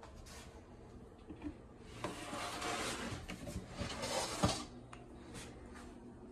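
Plastic snake tub and its lid being handled: quiet for the first two seconds, then scraping and rustling of plastic with several sharp clicks, the loudest about four and a half seconds in.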